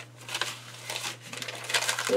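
Glossy magazine paper cut-outs rustling and crinkling as they are gathered and moved by hand, in a few short bursts over a steady low hum.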